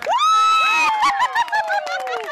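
High-pitched cheering and screaming from softball spectators and teammates: one long, loud shout for most of the first second, then several voices yelling over one another, their pitch falling.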